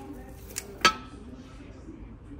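A glazed ceramic serving platter clinking against the stacked platters it is lifted from: a light tick, then one sharp clink with a brief ring just before the one-second mark.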